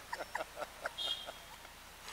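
Soft laughter trailing off in a run of short, quiet giggles that fade away.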